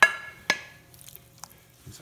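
Metal spatula knocking twice, about half a second apart, each knock with a short ring, as the last of the chicken and sausage is scraped off the plate into the pot of stock; faint small ticks follow.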